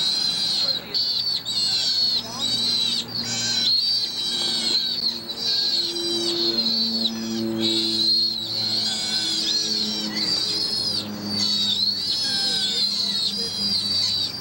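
Sea otter pup squealing in high-pitched calls, one after another almost without pause. A steady low hum runs underneath from about two seconds in.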